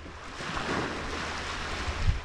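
Small waves on Lake Michigan washing onto a pebbly beach, the wash swelling about half a second in, over a low rumble of wind on the microphone.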